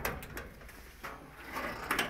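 A few light knocks and clicks, spaced irregularly.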